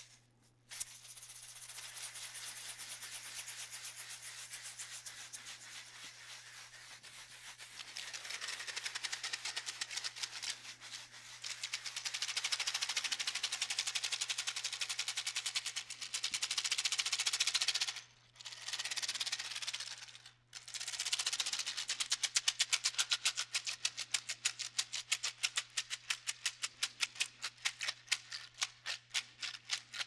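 Hand shakers in an improvised solo: a wooden maraca shaken in a steady rattling stream, then a long dried seed-pod shaker giving a louder continuous wash of rattling seeds. It breaks off twice briefly near the middle, then turns to quick, even strokes of about four a second toward the end.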